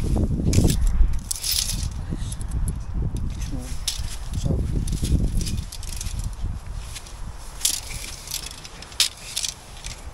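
Cavity-wall insulation slabs and a tape measure being handled while a piece is measured for cutting: irregular rustling and scuffing over a low rumble, with a few sharp clicks, the clearest near the end.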